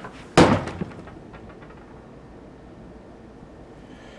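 A hard punch with a 3D-printed ABS knuckle duster into a mounted 2x4: one sharp, loud smack about half a second in, followed by a few small clicks. The blow busts out the top of the printed finger and the bottom of the finger guard.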